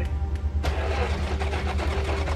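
A stalled dump truck's engine being cranked by its starter, turning over with rapid ticks from about half a second in without catching, over a steady low engine drone. The truck has been disabled, perhaps by a hidden kill switch.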